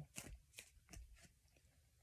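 Tarot cards being handled, faint: four soft card flicks or snaps within the first second or so, then quiet handling.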